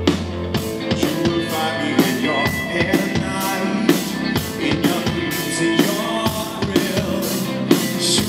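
Live rock band playing, with a steady drum beat of regular cymbal and snare hits over guitar and bass.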